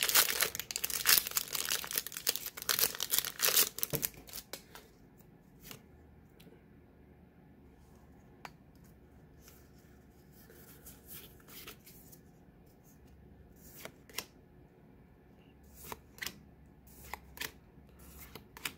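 A foil Pokémon booster pack is torn open and crinkles loudly for about the first four seconds. After that it is quiet, with scattered faint clicks and ticks as the cards are handled.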